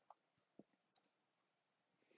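Near silence: room tone, with three faint clicks in the first second.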